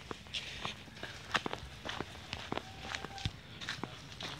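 Footsteps on a dry, leaf-strewn dirt path, an irregular run of short scuffs and crunches a couple of times a second.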